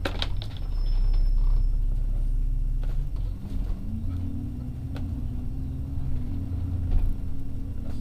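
Alexander Dennis Enviro400 double-decker bus heard from inside: a low engine rumble whose pitch shifts and rises partway through as the bus pulls away through a bend. Occasional sharp rattles and knocks from the bodywork, the loudest near the end.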